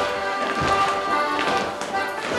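Accordion playing a traditional morris dance tune, with a few sharp knocks or taps over it.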